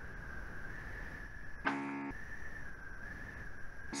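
A steady high-pitched whine over low hiss, with one short pitched sound about halfway through.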